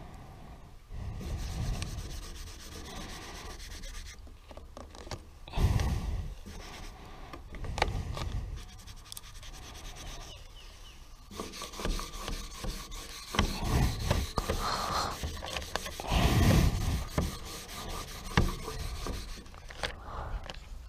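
A plastic squeegee rubbing and scraping in irregular strokes over transfer tape laid on vinyl lettering, pressing the letters down onto the trailer's painted body, with the paper-like crinkle of the transfer tape being peeled back.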